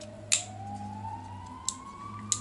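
A siren's slow wail, its pitch climbing steadily after a low point at the start, over a faint steady low hum. Two sharp metallic clicks come from a folding multitool being handled: a loud one about a third of a second in and a lighter one near the end.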